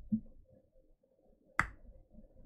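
A quiet room with a soft low thump just after the start, then one sharp, bright click about one and a half seconds in.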